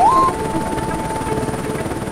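Cartoon helicopter sound effect: a fast, even rotor chop with a steady whine, and a rising tone right at the start.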